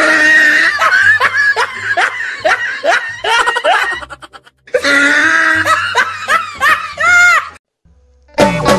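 Loud laughter in quick repeated bursts, about two a second, over a faint music bed, breaking off briefly about halfway and stopping abruptly just before the end.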